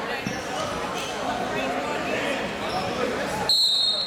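Spectators talking and calling out in a gym, then near the end a referee's whistle blast: one loud, steady high note about half a second long.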